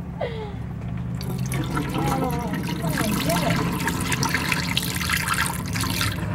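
Water pouring out of a plastic container and splashing into a stainless steel sink, starting about a second in and running steadily.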